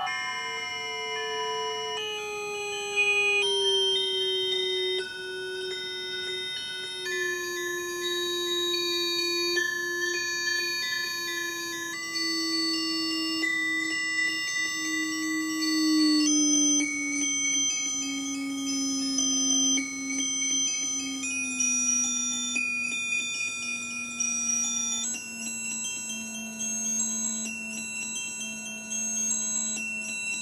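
Sensor-driven electroacoustic music synthesized in MaxMSP: clusters of steady, high electronic tones that shift to new chords every few seconds over a low tone sliding slowly downward.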